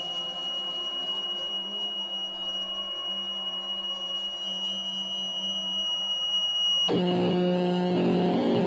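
Experimental electronic music from effects pedals and guitar: a steady high-pitched tone held over a low drone. About seven seconds in the high tone cuts off suddenly and a louder drone of several held pitches comes in.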